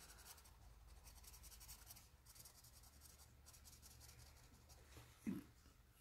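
Very faint scratching of a water-based felt-tip marker stroked over and over across sketchbook paper, with one brief soft sound near the end.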